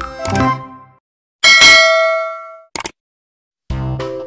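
Subscribe-button animation sound effect: a loud bell-like ding that rings and fades over about a second, followed by a quick double click. Background music fades before the ding and comes back near the end.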